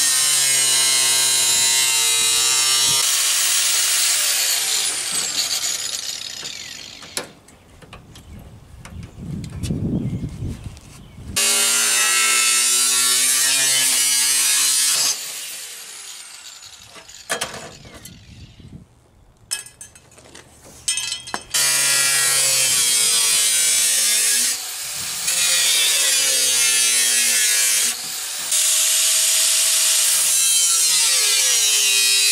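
Corded angle grinder with a thin cut-off wheel slicing through the sheet steel of a car trunk lid. It runs in several long cuts with a high whine, and the motor winds down with a falling pitch in the pauses between cuts.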